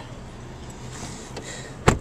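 Low steady outdoor background noise, then a single sharp knock near the end.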